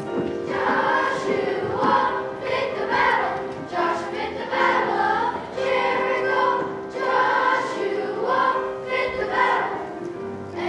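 Children's choir singing a song in unison, phrase after phrase.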